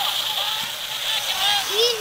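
Young children's high-pitched voices talking, with a rough hiss coming in and out during the second half.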